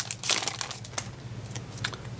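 Foil Yu-Gi-Oh booster pack wrapper crinkling as it is torn open and the cards are pulled out, with a cluster of sharp crackles in the first half second and a few more scattered later.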